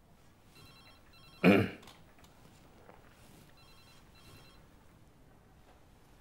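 Telephone ringing faintly in double rings, two pairs of rings about two and a half seconds apart. A man makes one short, loud vocal sound about a second and a half in.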